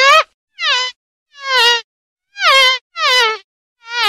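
Fly buzzing in short bursts: a long buzz cuts off right at the start, then five brief buzzes follow, each sliding down in pitch as it fades, with silent gaps between them.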